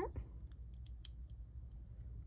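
A few faint, sharp plastic clicks close together about a second in: a LEGO minifigure and its black helmet being handled and fitted by hand.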